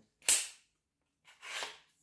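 A lightweight adjustable walking stick gives a sharp click as its length is set, and about a second later a softer, longer scraping sound.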